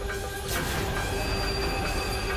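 Dramatic sound effects from a TV drama soundtrack: a whoosh about half a second in, then steady high ringing tones held over a sustained low drone.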